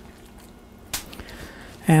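A knife slicing raw goose leg meat on a wooden cutting board, faint, with one sharp tap about a second in.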